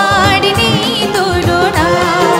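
Live Bengali song: a woman singing a held, wavering melodic line over keyboard accompaniment and a low, steady beat.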